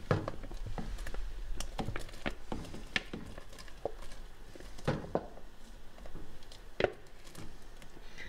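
Chopped chicken being shaken out of a plastic container into a pot of thick soup: irregular light knocks and taps of the container and utensils against the pot, with soft plops.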